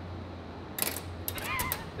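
Metallic clicking and rattling from an RX-8 rotary engine rotor being shaken hard by hand, starting about a second in, to test that its used seals, held only by goop, stay in their grooves. A short yell sounds over the rattling near the end.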